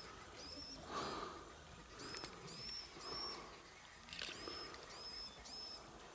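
A bird calling faintly: short, high, arched whistles repeated in quick runs of two or three, over soft outdoor background hiss.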